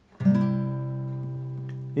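A chord strummed once on a nylon-string classical guitar about a fifth of a second in, then left ringing and slowly fading.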